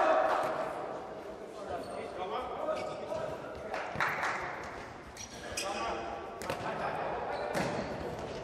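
Futsal ball being kicked, about four sharp impacts echoing around an indoor sports hall, with players' voices calling across the court.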